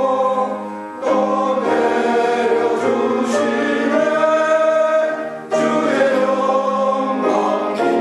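Men's choir singing a hymn in held, sustained phrases, with short breaks between phrases about a second in and about five and a half seconds in.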